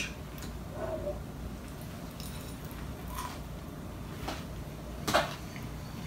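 A man chewing a mouthful of crispy fried hash brown, faint crunching with two short, sharper sounds near the end.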